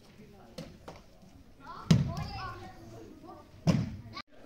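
Bodies being thrown onto a padded martial-arts mat, landing with heavy thuds: small ones in the first second, the loudest about two seconds in and another near the end.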